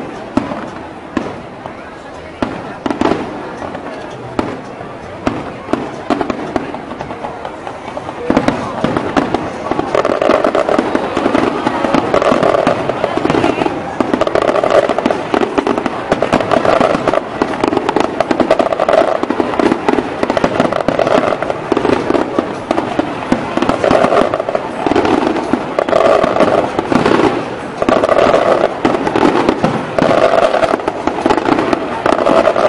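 Aerial fireworks shells bursting: separate bangs at first, then about eight seconds in the firing thickens into a louder, almost continuous barrage of bangs and crackling.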